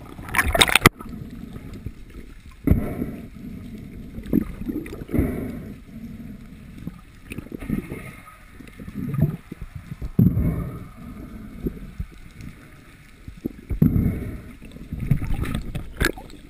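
Water moving against an underwater camera housing as a diver swims: repeated low swishing swells and dull bumps, with a short, sharp burst of bright noise about half a second in.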